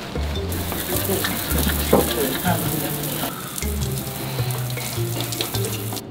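Water running from an outdoor wall tap, a steady hiss, over background music with a steady bass beat.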